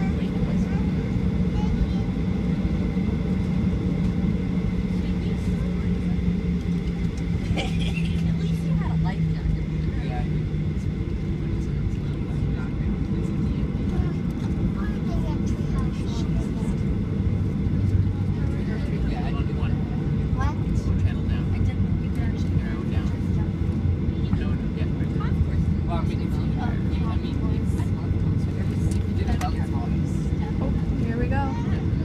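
Cabin noise of a WestJet Boeing 737 taxiing: the jet engines' steady rumble and low drone, which drops in pitch about ten seconds in and settles lower.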